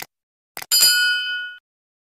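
Subscribe-button animation sound effect: a short click, then another click about half a second in. A single bright bell ding follows and rings out for about a second.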